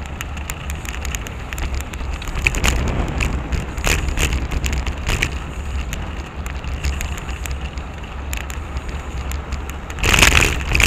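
Riding noise picked up by a bicycle-mounted camera: a steady low wind rumble on the microphone with many small clicks and rattles as the bike rolls over the street surface.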